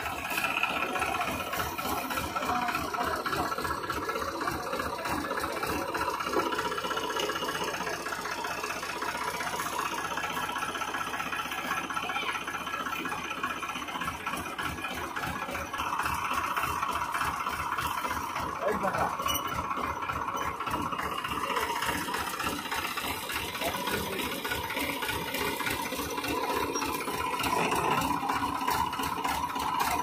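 Diesel tractor engine idling steadily close by, with an even, rhythmic firing beat.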